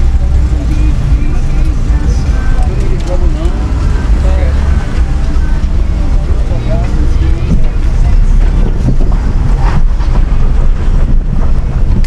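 Ford Focus 2.0 heard from inside the cabin as it drives slowly off a ferry onto cobblestones: a steady low rumble of engine and tyres on the rough surface. Voices can be heard in the background.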